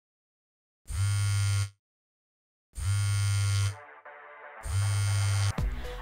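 A mobile phone vibrating on a hard tabletop: three buzzes of about a second each, with roughly a second's pause between them.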